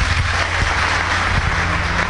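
Audience applauding: a dense, steady clatter of many hands clapping, with a low steady hum underneath.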